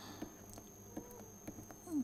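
Quiet pause with a steady high-pitched electrical whine and a faint low hum, broken by a few light ticks of a stylus writing on a tablet screen.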